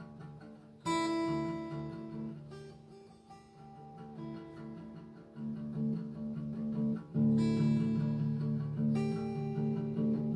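Acoustic guitar played slowly: strummed chords left to ring and fade, with strong strums about a second in and again near seven seconds.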